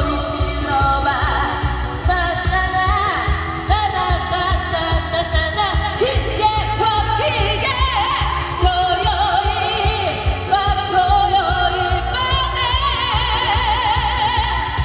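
A woman singing live into a handheld microphone over an accompaniment track with a steady beat.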